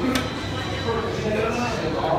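Indistinct voices echoing in an arena hallway as hockey players walk by on skates, their steps clacking on the floor, with one sharp click just after the start.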